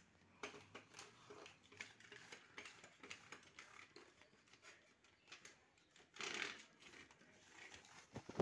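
Faint rustling and small clicks of a cloth wiping dirt off metal rails and parts inside an open printer, with one brief louder rub about six seconds in.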